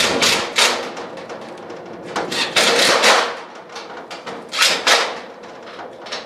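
Cordless drill/driver working on a steel storage-shed door while a lock is being fitted, with metal knocks and clanks from the door: a few short bursts, a longer one of about a second between two and three seconds in, and two sharp knocks near five seconds.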